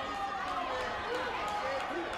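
Indistinct overlapping voices of spectators and coaches in a sports hall, with a couple of light taps near the end.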